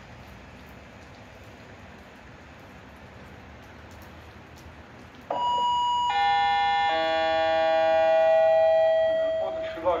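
Railway station public-address chime: three descending bell-like tones, starting about five seconds in and each ringing on as the next sounds, the signal that a station announcement is about to follow. Before it there is only a low, steady station background.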